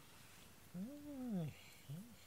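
A cat meowing: one low, drawn-out meow that rises and falls about halfway in, and the start of a second near the end.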